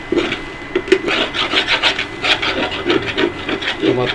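A spatula scraping and stirring sliced bitter gourd in a frying pan, in quick repeated strokes of about four a second from about a second in.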